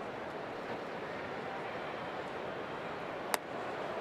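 Steady murmur of a ballpark crowd, with a single sharp pop about three seconds in: a slow breaking ball landing in the catcher's mitt for a called strike.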